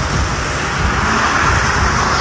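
Roadside traffic noise: a steady low rumble of engines under a tyre hiss that swells about halfway through.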